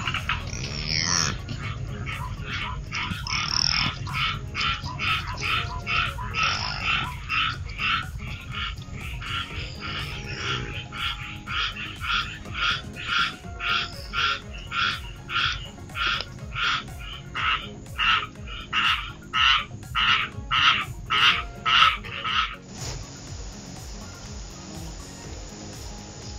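An animal calling in a long, regular series of short calls, a little under two a second, growing louder toward the end and cutting off abruptly shortly before the end.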